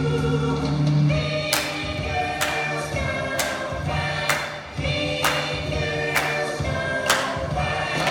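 A male vocal quartet singing a cappella in close harmony, joined about a second and a half in by hand claps on the beat, roughly one a second.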